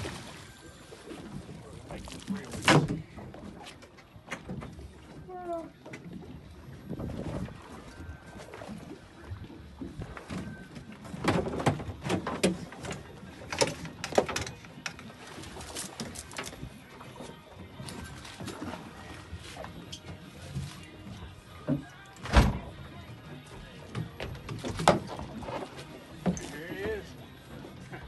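Irregular hard thumps and knocks on a fiberglass boat's deck and fish box while a mahi is brought aboard. One sharp knock comes a few seconds in, a cluster follows in the middle, and another sharp one comes near the end, over steady wind and water noise.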